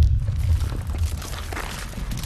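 Deep low rumble with faint crackling and crunching throughout: a film sound effect of a stone floor cracking and giving way underfoot.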